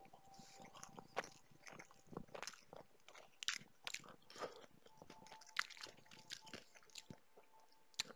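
A person biting and chewing crunchy food close to the microphone: faint, irregular small crunches.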